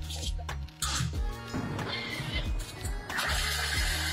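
Background music with a steady bass line. Near the end, a Thermomix TM6 joins in for under a second, its blade whirring at speed 7 as it chops garlic, thyme and sun-dried tomatoes.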